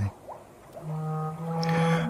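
A sustained drone of held tones, one low steady note with several higher steady notes above it, swells in about a second in after a brief hush.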